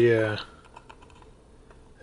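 A run of light, irregular clicks and taps of fingers handling the plastic battery case of an Icom IC-A20 handheld airband radio.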